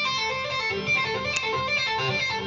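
Electric guitar played legato: a quick, even run of single notes sounded by left-hand hammer-ons and pull-offs, climbing through a three-notes-per-string pentatonic pattern on frets five, eight and ten.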